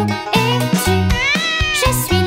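One cat meow sound effect, rising then falling in pitch, about a second in, over bouncy children's song backing music with a steady bass beat.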